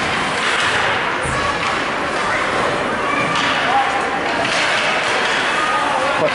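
Ice hockey game sounds in a rink: a steady wash of skating and spectator noise with scattered distant voices, and a thud about a second in.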